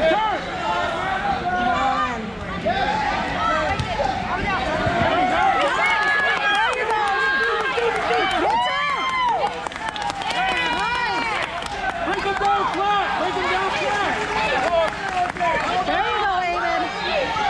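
Several voices shouting over one another, coaches and spectators yelling at the wrestlers, over the chatter of a crowd. One loud drawn-out shout stands out about nine seconds in.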